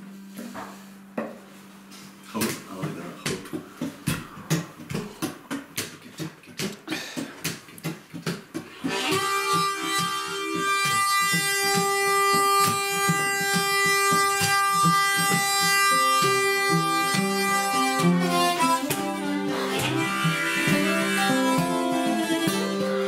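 Acoustic guitars strumming a rhythm. About nine seconds in, a harmonica joins with a long held chord over them, changing chords near the end.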